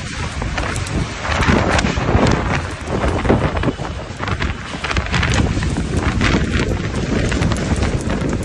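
Storm wind buffeting the phone's microphone in strong gusts, a loud, rumbling rush with a hiss of rain.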